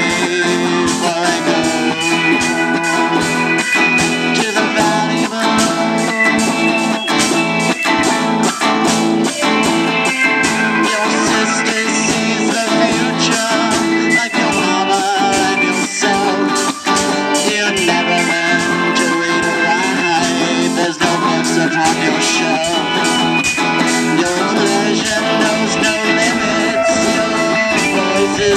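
Live rock band playing: electric guitars over a drum kit keeping a steady beat, with no clear singing.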